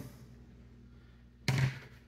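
Quiet room tone, then about one and a half seconds in a single short thump of a plastic hard hat being handled.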